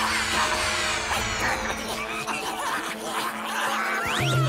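Cartoon background music with small creatures' high chittering and cackling voices laid over it.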